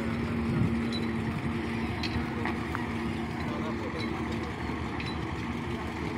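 Diesel engine of a tractor-trailer truck running at low speed while it slowly reverses a long flatbed trailer, a steady engine hum.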